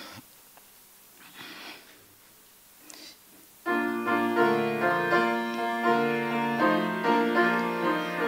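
A few seconds of quiet room tone with faint rustling. Then, about three and a half seconds in, a piano keyboard starts playing sustained chords: the introduction to the announced opening hymn.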